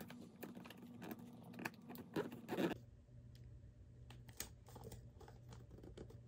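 Wrapping paper crinkling and rustling in short, irregular bursts as it is folded and pressed around a small gift box.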